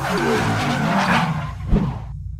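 Tyre-screech skid sound effect over a low rumble, swelling about a second in, with a sharp hit near the end.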